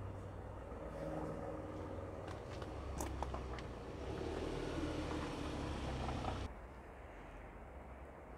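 Ford Transit Custom van's engine idling: a steady low hum with a few faint clicks. It drops away sharply about six and a half seconds in, leaving a quieter background hum.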